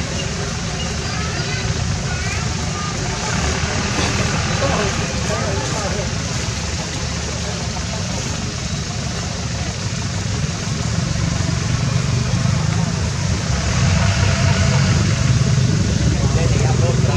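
People talking in the background over a steady low rumble, with a few short high chirps early on.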